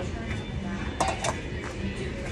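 A couple of quick clinks of tableware on a restaurant table about a second in, over steady low room noise.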